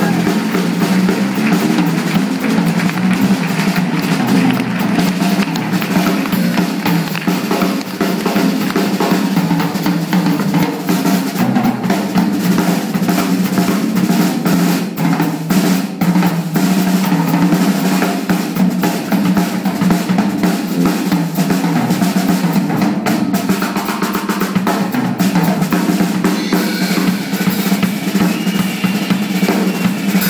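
Live blues band playing an instrumental passage led by the drum kit: busy snare and bass drum hits with rolls, over a steady low electric bass line, loud and continuous throughout.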